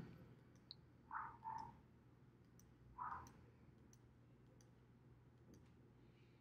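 Faint, scattered computer mouse clicks against near silence, as vertices of a line are placed. The more distinct ones fall about a second in and about three seconds in.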